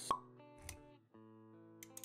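Music for an animated intro, with a short, sharp pop sound effect just after the start, then held musical notes.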